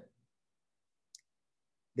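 Near silence, with a single faint, very short click about a second in.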